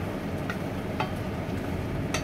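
Wooden spatula stirring food in a pan on a gas hob, with two sharp knocks of the spatula against the pan about half a second and one second in, over a steady low hum.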